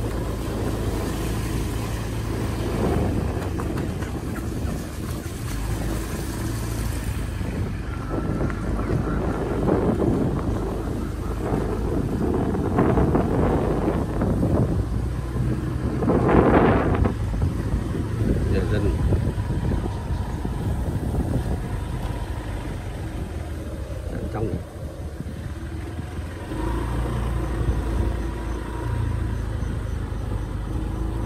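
A vehicle engine running steadily, with wind rushing on the microphone as it moves. The sound swells about halfway through.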